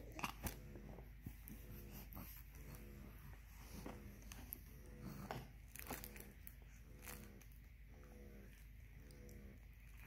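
Faint, scattered taps and rustles from a baby's hands handling a soft cloth book on a high-chair tray, in a quiet room.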